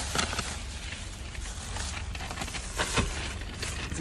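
A bite into a crispy fried chicken sandwich and chewing, with paper and plastic food packaging rustling and a few short crisp crackles, over a steady low hum in the car.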